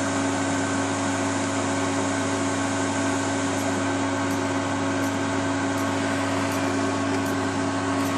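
Cooling fans and electrical hum of bench power equipment (switch-mode power supply and electronic load) running steadily under heavy load as the current demand is pushed to the supply's limit.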